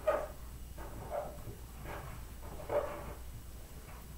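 A dog barking off-screen: about four short barks, roughly a second apart.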